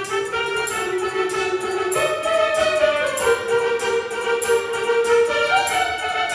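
Live band playing a South Indian film song, the melody in long held notes that change pitch a few times, over a steady, light cymbal beat.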